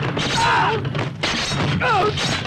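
Sound effects of a sword fight in an action film: a rapid run of loud hits and swishes, with short falling cries among them, over a background score.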